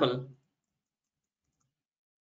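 The end of a spoken word, then near silence with a couple of faint computer-keyboard key clicks about a second and a half in.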